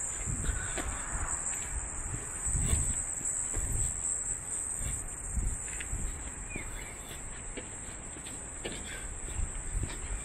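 Walking footsteps on a concrete path, low thuds about once a second, under a steady high-pitched drone of insects.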